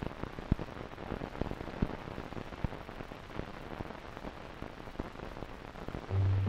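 Steady hiss with scattered clicks and pops: the surface noise of an old optical film soundtrack running with nothing else recorded on it.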